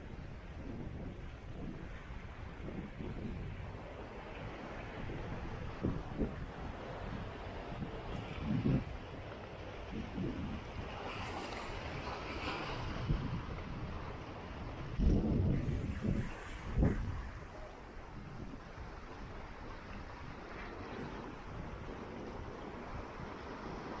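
Sea surf washing over rocks, with wind buffeting the microphone in low rumbling gusts; the strongest gusts come about two-thirds of the way through.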